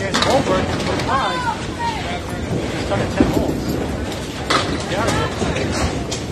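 Candlepin bowling alley din: a steady rumble of small balls rolling down wooden lanes, with sharp clatters of pins being struck, the clearest about four and a half seconds in.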